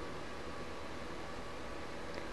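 Steady low hiss of background noise, even throughout, with no distinct event.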